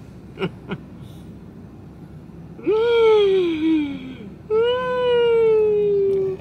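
A woman's voice: a short laugh and 'yeah' just after the start, then two long, drawn-out high vocal notes, a wail-like 'ooh' in falsetto, each sliding down in pitch. The first comes about two and a half seconds in, the second right after it, and the second is held longer.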